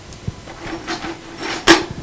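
Pieces of stone, petrified wood among them, clicking and knocking together as they are picked up and handled, with one sharp knock near the end.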